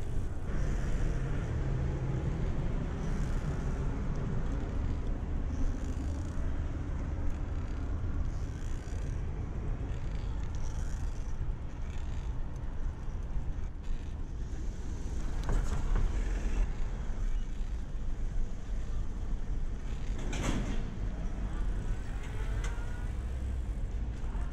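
Wind rumbling on the microphone and road noise from a bicycle riding along a concrete street, with two brief louder sounds, about two-thirds of the way through and again near the end.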